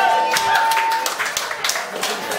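A céilí band's last held note ends about a second in, followed by scattered hand clapping and talk from the set dancers as the figure finishes.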